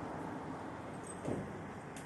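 Quiet street ambience: a steady hum of distant road traffic, with one brief faint sound a little past a second in.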